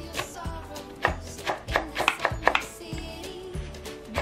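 Background music over a chef's knife chopping green onion on a bamboo cutting board, a quick irregular series of sharp taps.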